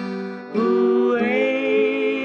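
Country-western duet: two women's voices holding notes in close harmony over acoustic guitar. The sound dips briefly about half a second in, then the next held notes come in.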